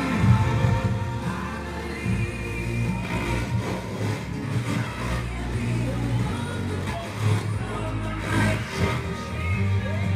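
Music with singing played over a Sansui stereo receiver and its loudspeakers, with a strong steady bass line.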